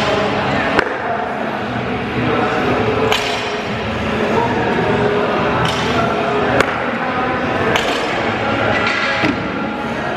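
Barbell deadlift reps: rubber bumper plates thud on the gym floor several times as the loaded bar is set down. Music and voices carry on underneath.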